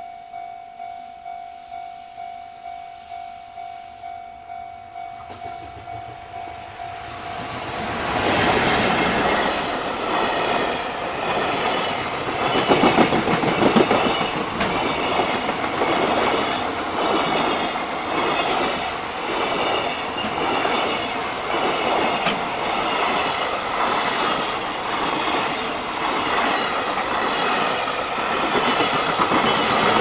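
Japanese level-crossing warning bell ringing at about two strokes a second. About eight seconds in, a container freight train starts rolling past close by, its wheels clattering over the rail joints, while the bell goes on ringing. Near the end the noise swells as an EF210 electric locomotive hauling a second freight train passes on the other track.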